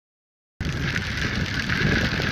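Wind buffeting a phone microphone outdoors, cutting in abruptly about half a second in after silence, with a steady higher hum running under the rumble.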